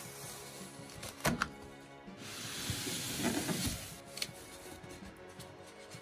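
Packing tape being pulled off a cardboard box: a sharp click just over a second in, then a long hissing rip of tape from about two to four seconds in, over soft background music.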